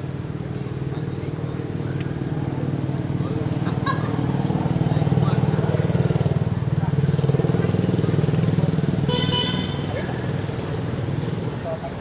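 A motor vehicle engine passing by, growing louder to a peak about halfway through, then fading near the end.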